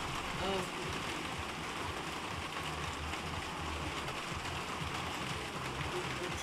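Steady hiss of rain falling, with faint background voices and a brief voice about half a second in.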